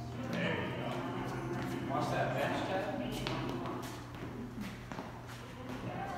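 Sneakers stepping and shuffling quickly on a rubber gym floor during tennis footwork drills, with scattered short footfalls, under voices and background music in the room.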